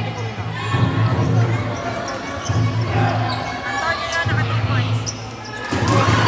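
Game sounds on an indoor basketball court: a basketball bouncing, with short high squeaks that are likely sneakers and the voices of players and spectators, under a low steady hum.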